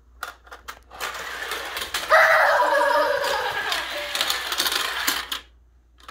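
Hard plastic parts of a motorised toy ski slope clicking and rattling as its lift and small skier figures move along the track: a few separate clicks at first, then a dense clatter that cuts off suddenly near the end.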